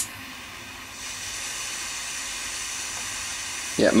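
Butane jet lighter, a Prof angled-neck torch lighter set to high, clicking alight and then its jet flame hissing steadily against an aluminium can. The hiss gets a little louder about a second in and then holds even.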